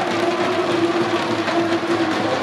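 Crowd noise from the stands of a sports hall: a dense din of voices and clapping, with one long held note running through it.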